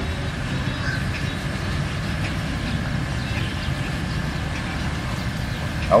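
Steady low background rumble, even in level and without pauses.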